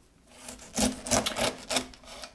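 A knife slicing the tough rind off a whole pineapple on a wooden chopping board: five or six quick cuts about a quarter second apart.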